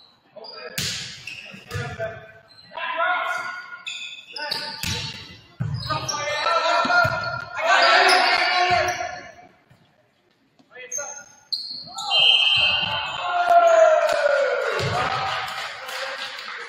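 Indoor volleyball rally on a gym's hardwood court: several sharp smacks of the ball being hit and landing, with players' voices. Loud shouting and cheering follow as the rally ends and the point is won.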